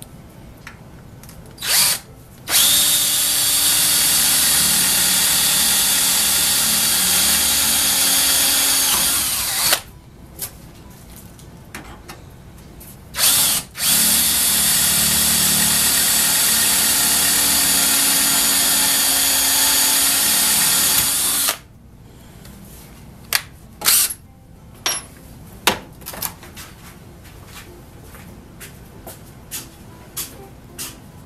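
DeWalt cordless drill running steadily at full speed, boring 3/16-inch pilot holes through sheet metal: two runs of about seven seconds each, each started by a brief trigger blip. Several sharp clicks and knocks follow in the last seconds.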